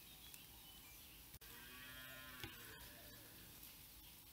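Near silence: faint room tone, with a faint low pitched sound about a second and a half in that lasts about a second.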